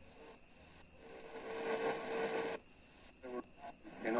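AM radio loudspeaker tuned between medium-wave stations: faint static, with a steady whistle coming up about a second in and cutting off sharply partway through. Near the end come a few short bursts of weak signal as the dial steps toward 1620 kHz.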